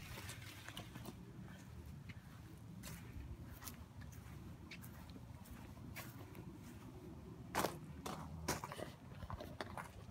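Faint footsteps crunching on gravel, irregular and quiet, with a couple of louder crunches about three-quarters of the way through.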